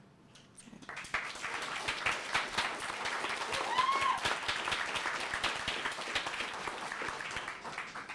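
Audience applauding after a spoken-word poem: many hands clapping, starting about a second in and going on until near the end. About halfway through, one short whoop rises and falls above the clapping.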